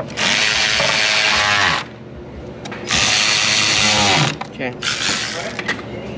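Cordless electric ratchet tightening the hose clamp on a diesel pickup's air intake tube. It runs in two long bursts and one short one, its pitch falling near the end of each long run.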